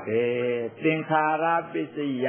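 A man's voice chanting, holding two long, level intoned notes in the way Pali verses are recited within a Buddhist sermon.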